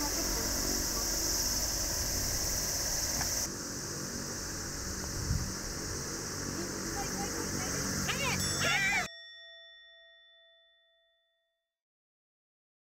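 A putter taps a golf ball about five seconds in, over a steady high outdoor hiss. Excited voices rise near the end of the stroke's roll, then the ambience cuts off and a bell-like chime rings and fades away over about two seconds.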